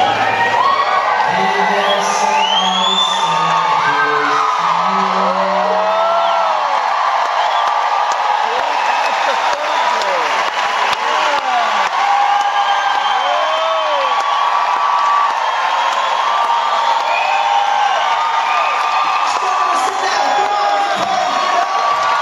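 Concert crowd cheering, whooping and clapping as a song ends, with many high whoops and screams over steady applause. Held final notes of the song sound under the cheering for the first several seconds, then stop.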